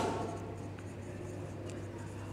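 Marker pen writing on a whiteboard, faint, over a steady low hum.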